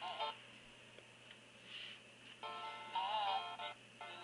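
Soundtrack music from a Flash video playing through the SmartQ V7 tablet's small speaker under the Gnash player. It comes in one short stretch of about a second and a half that starts and stops abruptly, after a brief snatch at the very start. The video is running very slowly.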